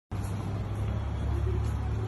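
A steady low rumble of street traffic.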